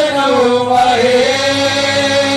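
Devotional singing of a Hindu guru vandana: a voice holds and bends long melodic notes over a steady instrumental accompaniment.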